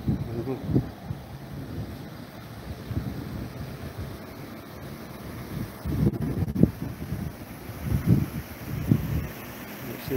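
Wind noise on the microphone, coming in irregular gusts that are loudest about six and eight seconds in.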